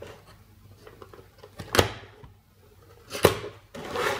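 A cheap plastic universal travel adapter pushed into a power-strip socket and handled: two sharp plastic clicks, about a second and a half apart, with a few fainter ticks.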